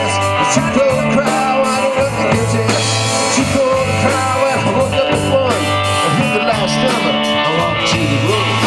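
Live rock band playing: drum kit with regular cymbal hits, bass guitar and electric guitar, with a lead line that slides and bends in pitch.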